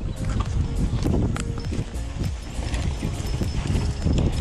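Mountain bike riding down a bumpy dirt singletrack: a steady low rumble with irregular clicks and knocks as the bike rattles over the ground.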